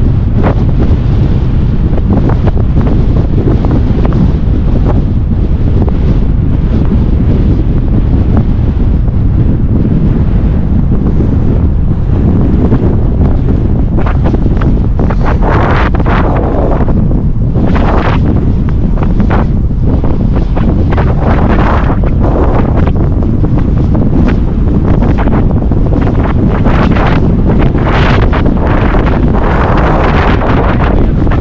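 Strong wind buffeting the microphone of a camera on a moving e-bike: a loud, steady, rumbling wind roar, with rougher surges in the second half.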